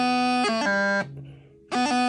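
Bagpipe practice chanter playing two short phrases of melody. Each phrase is a few steady reedy notes broken by quick grace-note cuts. The first phrase stops about a second in, and the second starts near the end.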